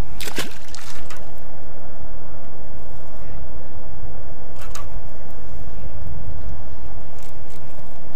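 Wind rumbling on a chest-mounted camera microphone, a steady low noise, with a few brief clicks and ticks from the casting and retrieve of a baitcasting rod and reel.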